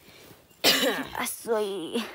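A person's voice without words: a cough-like burst a little after the start, then a short voiced sound that dips in pitch near the end.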